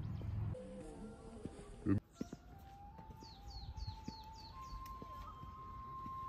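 Small birds chirping: a quick run of short, down-slurred high chirps, about five a second, with a steady high tone held beneath. A low rumble stops in the first half second, and the sound changes abruptly about two seconds in.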